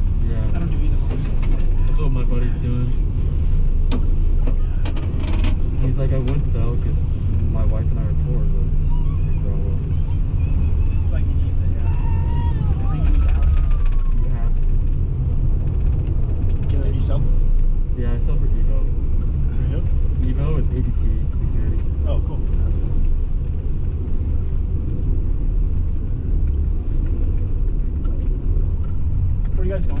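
Gondola cabin riding up its cable with a steady low rumble, and indistinct passenger voices in the cabin.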